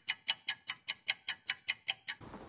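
Rapid ticking sound effect, like a clock or timer, about five even ticks a second, with dead silence between the ticks.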